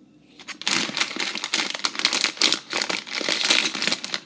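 Plastic snack-chip bag crinkling loudly as it is handled and pulled open at the top, a dense run of crackles starting about half a second in.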